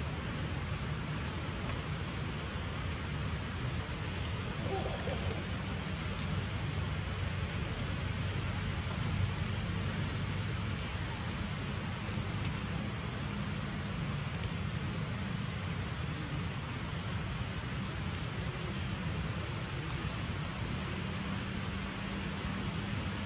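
Steady outdoor background noise: an even hiss with a low rumble underneath, holding level throughout with no distinct calls or knocks.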